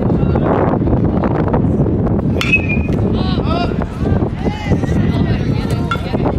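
Baseball bat striking a pitched ball about two and a half seconds in: a single sharp crack with a brief ringing ping. Spectators' voices shout and chatter throughout, rising into yells just after the hit.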